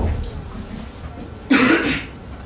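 A man coughs once into a handheld microphone, a short, loud burst about a second and a half in.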